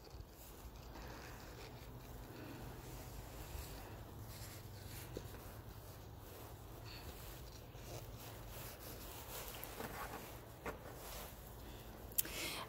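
Faint handling sounds: light rustling and a few soft clicks as a plant cutting wrapped in damp sphagnum moss is pushed into a clear plastic cup, over a steady low background hum.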